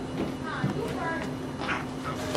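People talking over a steady low hum, with a few short falling pitched sounds.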